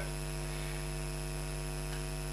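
Steady electrical mains hum, a low buzz with many overtones, from the microphone and sound system during a pause in speech.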